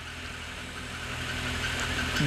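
A steady low hum with a faint hiss behind it, slowly growing louder, with no clicks or other distinct events.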